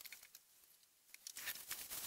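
Faint rustling and scattered clicks, like handling noise close to the microphone, sparse at first and thicker from about halfway through.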